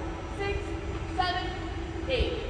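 A voice in short gliding notes over a steady held droning tone and a low rumble.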